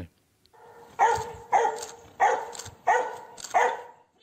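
A border collie search dog barking five times in a steady run, about one bark every two-thirds of a second.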